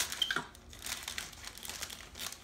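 Gift-wrap paper crinkling and rustling in irregular bursts as a capuchin monkey pulls and handles a wrapped present.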